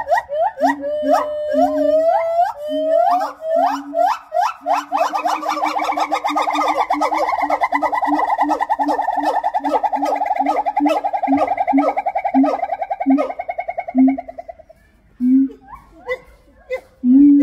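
White-handed gibbon singing its great call: rising whoops about two a second that speed up after about four and a half seconds into a fast warbling trill. The trill breaks off about a second and a half before the end, leaving a few separate hoots.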